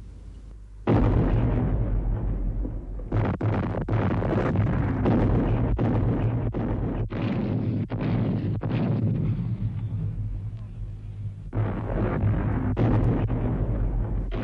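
Heavy artillery bombardment: after a faint low hum, a sudden onset about a second in of a continuous rumble of gunfire with many sharp blasts. It eases slightly around ten seconds in and swells again a moment later.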